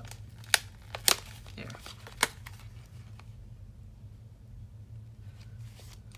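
Cardstock being handled and pulled loose from its foam adhesive: a few sharp paper snaps and clicks in the first two and a half seconds, then quieter handling, over a steady low hum.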